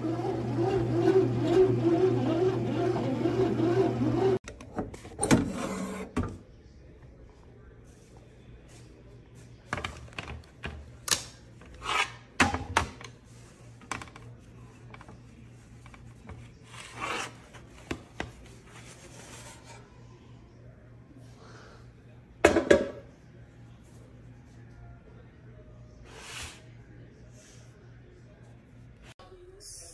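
A bread machine's motor hums steadily as it kneads dough. After it cuts off a few seconds in, there are scattered scrapes, rubs and clicks as the nonstick bread pan is handled, with one loud knock near the end.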